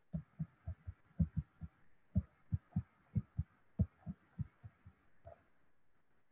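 Stylus tapping and dragging on a tablet screen while handwriting numbers: a quick, irregular string of soft, dull thuds, about three or four a second.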